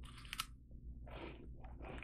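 Biting into a chocolate-coated puffed corn umaibo stick, with a short crisp crunch at the bite, then soft chewing.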